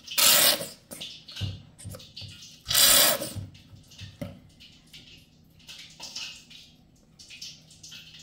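Plastic squeeze bottle of mustard squirting onto raw chicken wings in a glass bowl: two loud hissing squirts of sauce and air, the second about three seconds in, with a few soft low knocks between.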